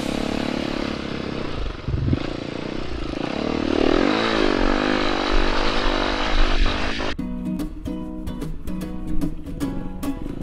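Off-road motorcycle engine running and revving, its pitch rising and falling a few times about four seconds in. About seven seconds in it gives way abruptly to music with a steady beat.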